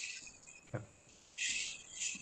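Two short bursts of hiss picked up by a participant's microphone on a video call, one at the start and one about halfway through, with a brief faint 'okay' between them.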